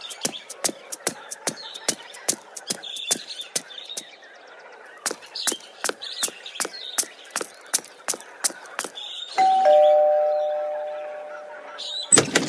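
Cartoon sound effects: quick, regular footsteps, about two or three a second, then a two-note ding-dong doorbell near the end, a higher note followed by a lower one that rings on and fades.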